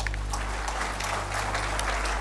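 Audience applauding: many hands clapping in a steady, even patter.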